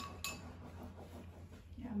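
Chopsticks clinking twice against a bowl, about a quarter second apart, as dumpling filling is scooped, then quiet.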